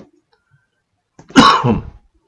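A man coughs once, loudly, a little past the middle; otherwise near silence.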